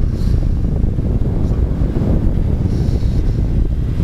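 Wind noise buffeting the microphone of a motorcycle at road speed, a steady, low-pitched din with no breaks. The 2001 Yamaha FZ1's carbureted 20-valve inline-four engine runs beneath it.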